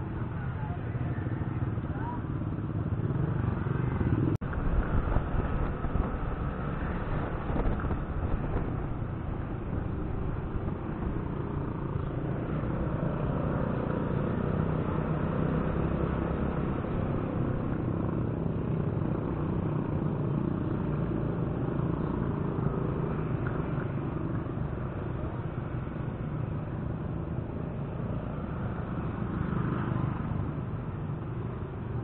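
Yamaha scooter riding down a street, heard from the handlebars: steady engine and road noise with a low rumble, and one sharp click about four seconds in.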